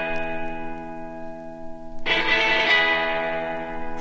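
Guitar chords struck and left to ring: one chord fades out, then a second chord is struck about halfway through and rings on.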